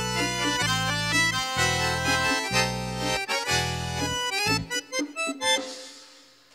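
Bayan (button accordion) playing the closing instrumental bars of a song: chords over bass notes in a steady rhythm, with hand-drum (conga) strikes. It stops about five and a half seconds in and rings away.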